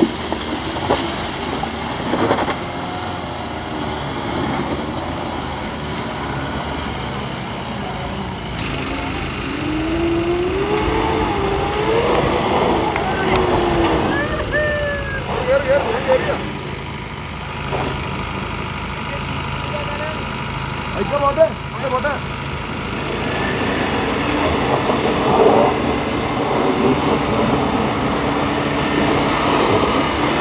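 Off-road 4x4 engines running steadily under load as a soft-top jeep and then a Mitsubishi Pajero climb a muddy slope. People's voices call out over the engine noise several times from about a third of the way in.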